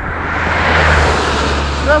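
A box truck driving past: its engine and tyre noise swell to a peak about a second in, then fade as it goes by, over a steady low hum.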